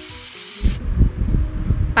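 Pressure cooker venting steam with a steady hiss that cuts off suddenly about a second in, followed by low rumbling thuds.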